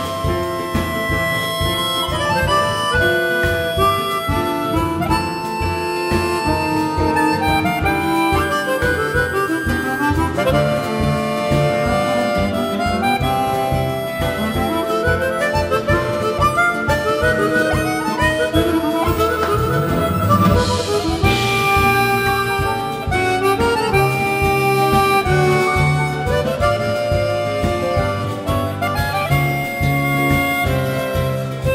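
Two chromatic harmonicas playing a tango melody in duet over a live band with acoustic guitar, piano, double bass and drums, keeping a steady beat. A brief rushing swell comes about two-thirds of the way through.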